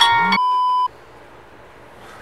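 The end of a short electronic tune, then one steady high-pitched beep that cuts off abruptly a little under a second in, followed by a low steady hiss.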